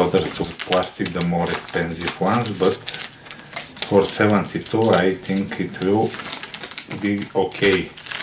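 A man talking over the crinkle and crackle of a soft plastic wet-wipes packet, as its resealable sticker flap is lifted and a wipe is pulled at.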